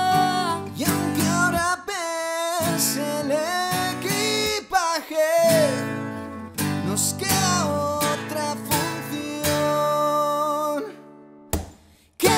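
Acoustic band music: acoustic guitar strumming chords with a melodic line gliding in pitch above it, without sung words. The music cuts out almost completely about a second before the end.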